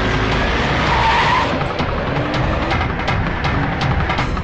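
An SUV speeding and skidding on a dusty road, engine and tyre noise under a dramatic film score.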